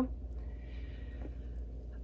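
A pause between sentences holding a soft breath through the nose, over a low steady hum.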